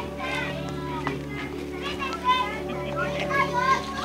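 Several children's high voices chattering and calling out over one another, over background music with long held notes.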